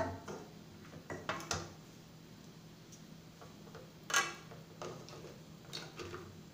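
A few scattered clicks and light knocks of a knife against a metal pan as sausage is sliced in it, the loudest about four seconds in.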